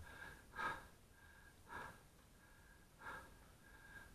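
Faint, quick breathing close to the microphone, four breaths about a second and a quarter apart.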